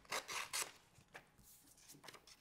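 Glossy catalog paper rustling as it is handled and cut with scissors: a few short, crisp strokes in the first half-second or so, then a small click about a second in.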